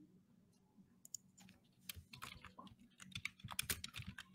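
Faint computer keyboard typing: a few isolated key clicks, then a quick run of keystrokes from about two seconds in as a name is typed into a spreadsheet.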